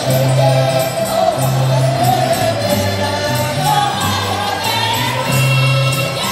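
Portuguese folk dance music played live: a group singing together over accordion, with alternating bass notes and a steady beat of jingling percussion.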